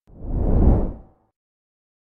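A whoosh sound effect from an animated subscribe-button end card. It swells up, peaks past the half-second and fades out after about a second.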